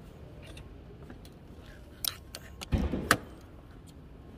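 Clicks and knocks from hands working at the open driver's door and cabin of a Lamborghini Urus: a single click about two seconds in, then a short rustle ending in a sharper click about three seconds in.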